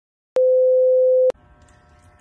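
A single electronic beep: one loud, steady, pure tone about a second long that starts and stops abruptly with a click at each end. It gives way to faint room noise.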